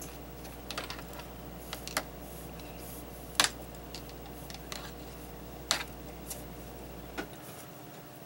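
B&G bulb duster being squeezed by hand to puff dust over seedlings: a scatter of short sharp clicks and puffs, irregular and a second or more apart. A steady low hum underneath stops about seven seconds in.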